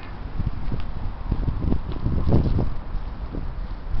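Outdoor background of distant road traffic and wind on the microphone, a steady low rumble, broken by soft irregular thumps.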